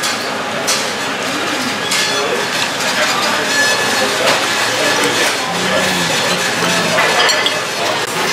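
Metal fork clinking and scraping against a ceramic plate, a few sharp clinks, over steady restaurant background chatter.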